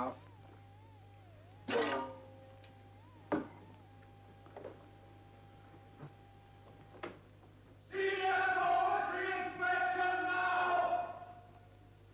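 A faint thin tone wavers and then holds steady, broken by a few sharp knocks. About eight seconds in, a few seconds of singing voices follow.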